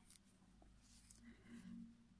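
Near silence: faint room tone, with a faint rustle of crocheted yarn fabric being handled about a second and a half in.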